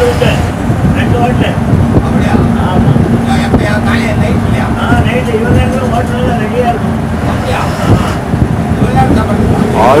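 Bus running on the road, heard from inside the passenger cabin: a steady, loud low engine and road drone with cabin rattle.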